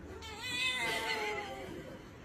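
A cat giving one long meow that rises at first and then slides down in pitch.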